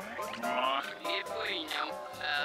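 Psytrance electronic music: synthesizer tones gliding and bending up and down in pitch, played fairly quietly with little bass.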